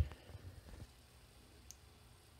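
A light knock, then a few faint clicks over the next second, and after that quiet room tone.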